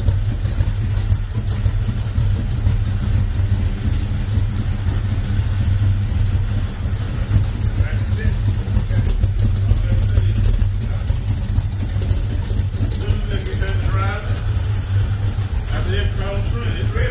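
Chevrolet Nova engine idling steadily, a loud, deep exhaust rumble with no revving.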